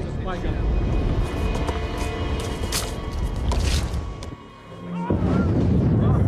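Film soundtrack: music over a heavy low rumble. The sound drops away briefly about four and a half seconds in, then the rumble comes back louder.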